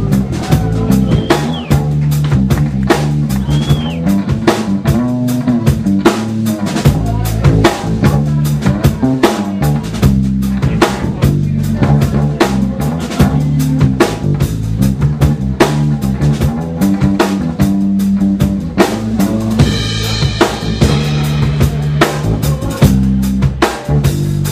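Live band playing an instrumental passage of a slow blues-rock song: a drum kit keeps time with snare and bass drum under electric guitars, with a few bent guitar notes early on and a long held guitar note near the end.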